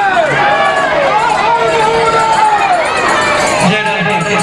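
A large crowd, mostly women's voices, singing naam kirtan together: devotional chanting of the Hari name in long drawn-out phrases that rise and fall, without a break.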